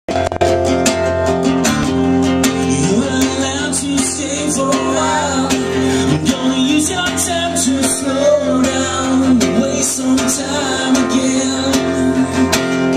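Acoustic guitar strummed in steady chords, played live through a small PA, with a man's voice singing over it through the middle.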